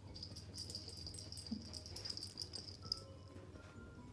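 A small bell jingling in quick, uneven shakes for about three seconds, then stopping, as a walking cat's collar bell does; faint music underneath.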